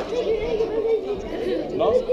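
Indistinct chatter of voices, mostly children's, in a hall.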